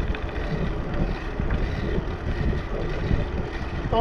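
Wind buffeting the microphone of a camera riding on a moving bicycle: a steady low rumble.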